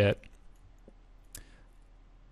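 A single computer mouse click about one and a half seconds in, against faint room tone.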